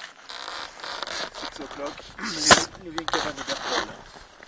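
Several people talking in the background at low level, with one sharp click or knock about halfway through.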